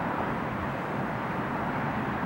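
A formation of helicopters flying off after passing overhead, heard as a steady, even rumble with no single sharp event.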